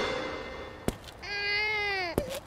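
A cat meowing: one long drawn-out call that starts just past the middle and dips slightly in pitch at its end. Before it, music fades out and there is a single click.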